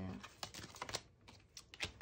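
A few light clicks and taps of tarot cards being handled as a card is drawn from the deck, in two short clusters.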